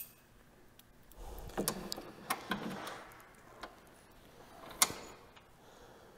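Faint, scattered metallic clicks and knocks of a wrench being fitted and worked on the 10 mm bolts that hold a snowmobile's front bumper, the sharpest click near the end.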